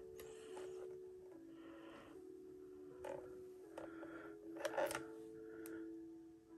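Faint soft background music of long held notes, with a few small clicks and rustles from fingers handling a gold-tone omega necklace and its box clasp, about three seconds in and twice near five seconds.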